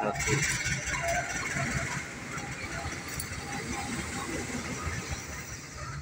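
A CC 201 diesel-electric locomotive's engine running as it passes close by. It is loudest in the first two seconds and then eases off.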